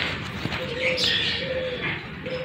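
Birds calling: a short, low cooing note sounds twice, about a second apart, with a few higher chirps between them.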